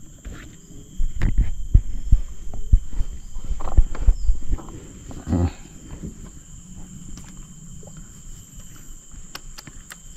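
Dull knocks and bumps of handling as fishing tackle is moved about in a boat, packed closely from about one second in to about four and a half seconds. Under them runs a steady high drone of insects.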